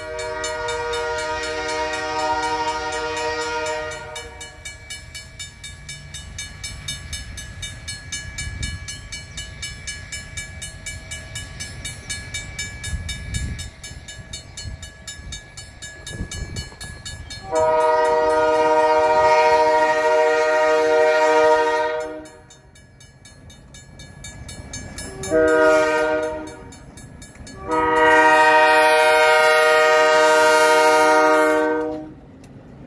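Diesel locomotive air horn sounding for a level crossing as a freight train approaches: a long blast, a pause, then another long blast, a short one and a final long blast starting near the end. Between the blasts comes the low rumble of the approaching diesel locomotives, and the crossing signal's bell rings at an even beat.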